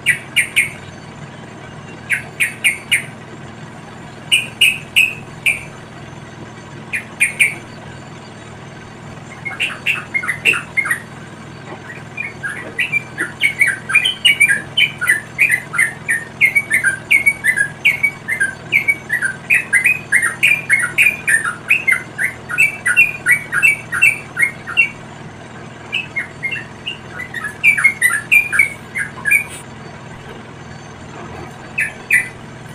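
Yellow-vented bulbuls (trucukan) chirping: short clusters of two to four notes, then a fast unbroken run of chirps for about a dozen seconds, then short clusters again near the end.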